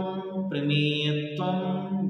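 A man chanting Sanskrit terms in a slow, sing-song recitation, drawing out each word on a long held note: a short note, then one held about a second and a half. The terms are the names of the general qualities of substance (astitva, vastutva, dravyatva…), recited like a japa on a mala.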